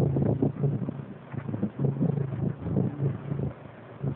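Background noise of a low-fidelity, band-limited lecture recording: a steady low hum and hiss with faint, irregular rustling and knocking underneath.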